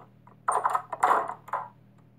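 An interior door being opened and shut: two short noisy sounds, one about half a second in and a longer one about a second in.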